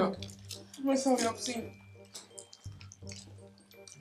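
Wet eating sounds: fingers squishing through fufu and fish in pepper soup, with smacking and chewing mouth noises as a series of small irregular clicks.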